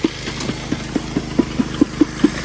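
Small gas engine of a water pump running steadily, feeding a high banker, with rapid knocks of rocks tumbling off the high banker, about four or five a second.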